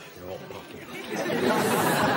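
Studio audience laughter swelling about a second in and staying loud.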